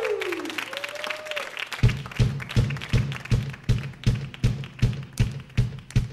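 Audience applause with a short falling tone over it, then about two seconds in a drum kit starts a steady, evenly spaced beat of about three strikes a second, the intro of the next rock-and-roll song.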